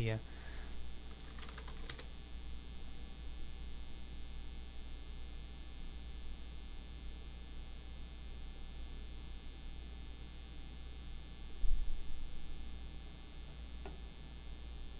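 Computer keyboard typing: a short run of keystroke clicks in the first two seconds, then a steady low electrical hum. A single dull low thump comes near the end.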